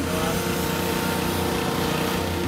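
Small petrol engine running steadily at a constant speed, an even drone without change.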